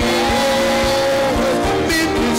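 Live worship band music, with a drum beat under a long held note that slides up into pitch and holds for about a second.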